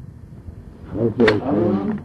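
A voice talking: a short, quieter pause, then speech resumes about a second in.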